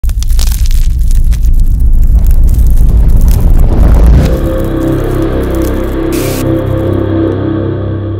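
Logo-intro sound design: a loud, rumbling explosion effect crackling with scattering debris for about four seconds, then a sustained low musical chord that holds, with a brief hiss just after six seconds.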